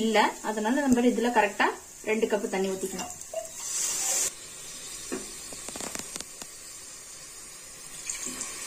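Liquid poured from a plastic bowl into a steel cup: a short hiss about halfway in, then a few light knocks of the cup, over a faint sizzle from the masala in the pressure cooker.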